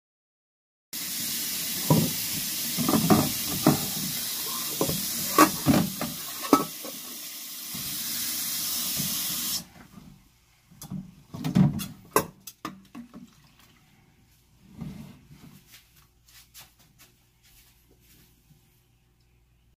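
Kitchen tap running into a sink of soapy water, with stainless steel cookware knocking against the sink several times. The tap shuts off abruptly about halfway through, leaving clunks and clatter of the pots being handled and scrubbed in the suds.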